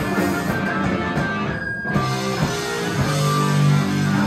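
Live rock band playing loud, with electric guitar, bass and drums, and longer held notes near the end.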